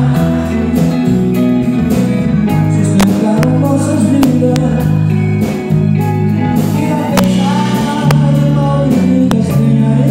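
Live band music: a male voice singing into a microphone over acoustic guitar, electric guitar, bass and drums.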